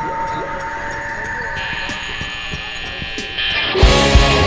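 Live rock band's intro: sustained guitar notes ringing with a few soft low thumps beneath, then the full band comes in loudly just before the end.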